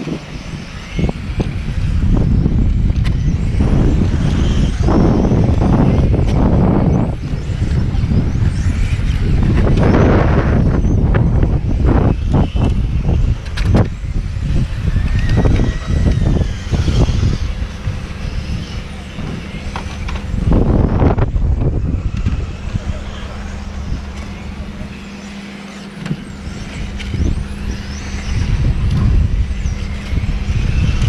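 Loud low rumble that swells and fades, over faint rising and falling whines of electric RC touring cars lapping the track.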